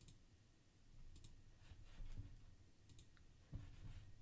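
Near silence with a few faint, scattered clicks and a couple of soft low thumps from someone working at a computer's mouse and keyboard.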